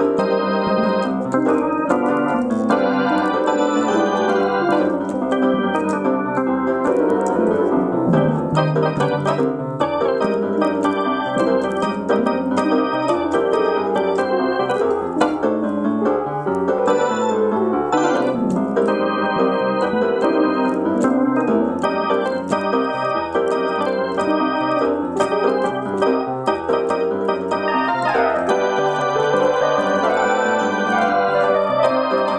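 Electronic keyboard played throughout in an electric-piano, organ-like voice, with sustained chords and a moving melody. Near the end a note swoops down in pitch.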